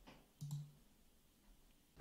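Near silence with a single short click about half a second in, a computer mouse button clicking.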